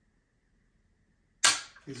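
A single sharp click from the rifle sitting on the tripod ball head, about one and a half seconds in after near silence, dying away quickly.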